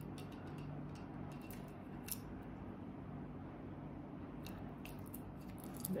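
Faint handling noises of a small plastic item being taken from its packaging: a few light clicks and rustles spread through, the clearest about two seconds in and a cluster near the end.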